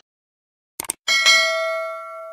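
Subscribe-button sound effect: two quick mouse clicks, then a bright bell ding that rings on and fades out slowly.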